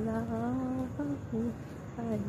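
A voice humming a slow devotional zikr chant of "Allah": one long, slowly gliding note for about a second, then two short notes.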